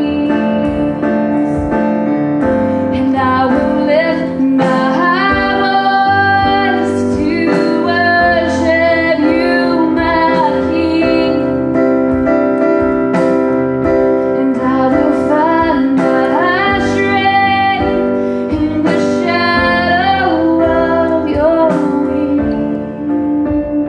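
A woman singing a worship song into a microphone over an electric keyboard, with acoustic guitar and drums in the band.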